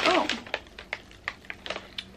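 Paper mailer bag and the plastic wrapping of a package crinkling as the package is pulled out: a string of short, sharp crackles at uneven intervals.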